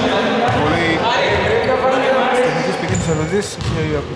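A basketball bouncing a few times on a wooden court in a large indoor hall, with players' voices calling out over it.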